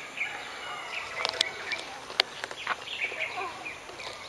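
Birds calling over light background noise, with a couple of sharp clicks.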